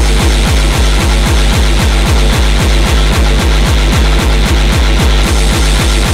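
Early hardcore gabber track: a heavily distorted kick drum hits about three times a second, each kick a falling boom, under a dense harsh layer of noise.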